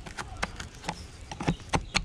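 Scattered short plastic clicks and knocks, about seven in two seconds, as the black plastic motor unit of a Henry vacuum cleaner is handled and worked loose, over a low steady rumble.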